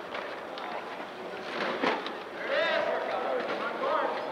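Gym game noise: voices calling out over the rolling and clatter of manual sport wheelchairs on the court, with one sharp knock a little before the middle and a shout about two and a half seconds in.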